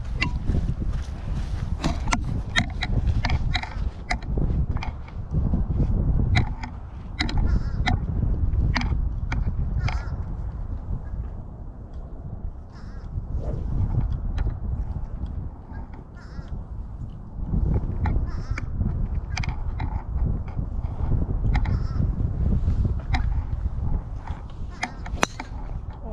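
Wind buffeting the camera's microphone: a low rumble that swells and dips, with scattered short clicks.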